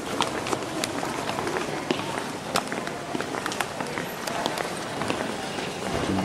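Footsteps on a hard, polished stone floor, a run of sharp irregular clicks, over a low murmur of voices in a large hall.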